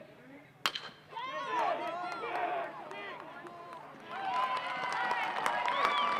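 A single sharp crack of a metal baseball bat hitting the ball just over half a second in. Then a crowd shouting and yelling, swelling into louder, sustained cheering from about four seconds in.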